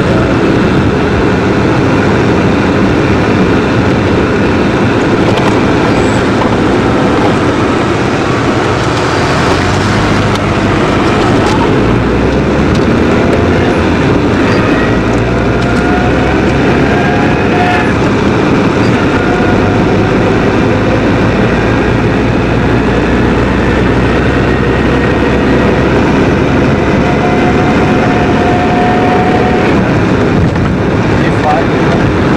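Car interior noise while driving on an expressway: a steady mix of engine, tyre and wind noise. A low engine drone comes up about ten seconds in as the car gathers speed.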